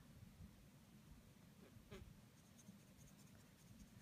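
Near silence, with faint strokes of a water brush on watercolour paper.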